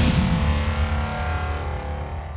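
Cinematic intro sting for a sports highlight segment: a heavy hit at the start, then a deep rumble and held tones that slowly fade away.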